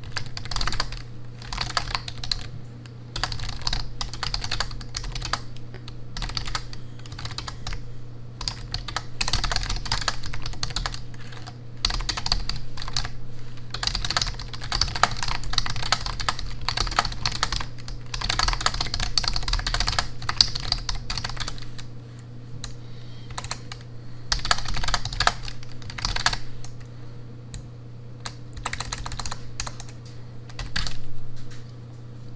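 Typing on a slim, low-profile computer keyboard: fast runs of key clicks in bursts, broken by brief pauses every few seconds.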